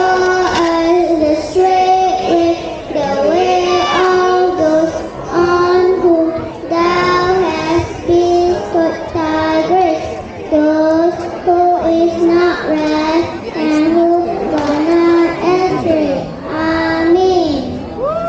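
A child's voice chanting a melodic recitation, in short phrases of held and gliding notes.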